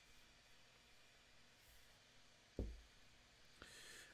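Near silence: faint room tone, with one brief low thump about two and a half seconds in.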